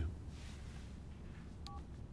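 A brief two-tone telephone beep near the end, over a faint steady hiss, as the phone call ends.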